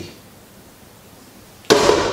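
Quiet room tone in a small kitchen, broken near the end by a sudden sharp knock that runs straight into a man's voice.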